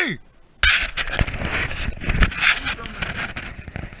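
Loud rustling and scraping, with crackles and knocks, from the angler's clothing and the brush rubbing against the body-worn action camera as he scrambles on the bank to land a hooked fish. It starts suddenly about half a second in.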